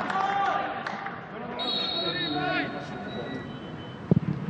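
Footballers shouting to one another on the pitch, short calls that carry and echo in an empty stadium, over a steady background hiss.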